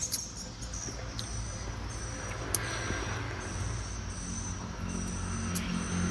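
Steady chirring of insects over a low steady hum, with a few faint clicks as a rambai fruit's thin skin is cracked and peeled by hand.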